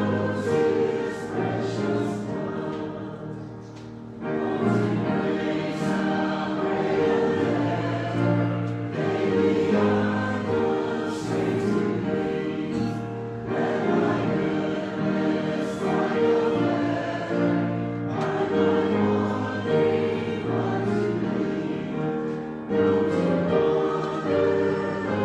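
Congregation singing a hymn together, with accompaniment, in held notes that move in steady phrases; the sound dips briefly about four seconds in between phrases.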